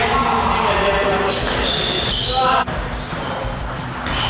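Table tennis ball being struck back and forth in a rally, clicking off rackets and bouncing on the table, with music playing behind it.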